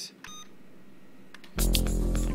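Quiet room tone with a brief electronic beep near the start. About one and a half seconds in, loud background music with a heavy bass cuts in.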